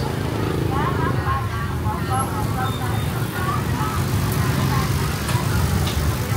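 Motorbike engines running at low speed, a steady low rumble, with people's voices talking throughout.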